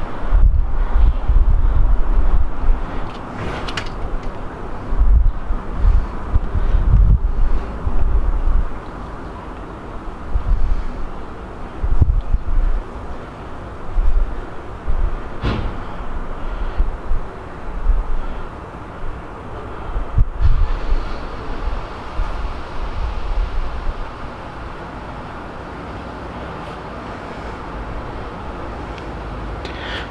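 Wind buffeting the microphone in gusts, with a few light knocks scattered through. It eases to a steadier, quieter rumble near the end.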